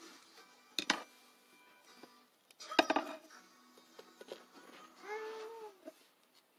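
Two sharp knocks of small objects against a tabletop, one about a second in and a louder one near three seconds, over faint background music. A short hummed or sung voice comes near the end.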